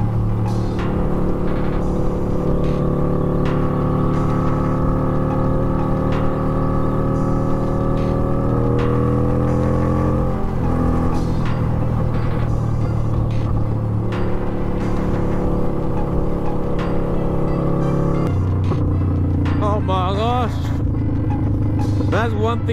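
Motorcycle engine running at cruising speed, its pitch steady, then climbing slightly before falling sharply about halfway through, and changing again near the end.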